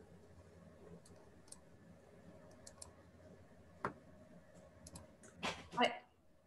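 Faint room tone with scattered small clicks, and one sharper click a little before four seconds in. A voice starts speaking near the end.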